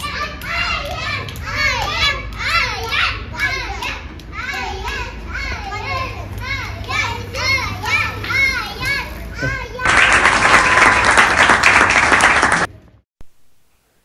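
Children shouting and cheering in high, rising-and-falling calls. About ten seconds in, a louder dense burst of clapping lasts about three seconds, then cuts off abruptly.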